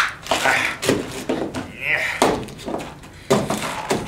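A man's voice, indistinct, mixed with a few knocks of objects tumbling about in a wicker basket.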